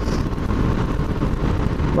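Yamaha FZ-09 motorcycle cruising steadily at about 58 mph, its engine and road noise mixed with wind rushing over the camera microphone.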